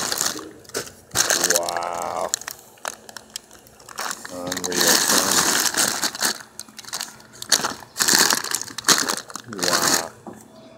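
Plastic snack wrappers and bags of crackers crinkling and rustling in bursts as they are handled and shifted in a cardboard box, with a few short voiced sounds in between.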